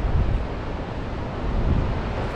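Wind buffeting the microphone over the steady wash of ocean surf breaking on the shore.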